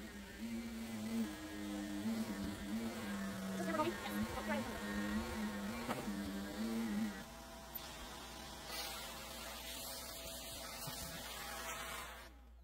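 Upright vacuum cleaner running over carpet with a buzzing hum that wavers in pitch as it is pushed back and forth. The hum weakens about seven seconds in and stops near the end.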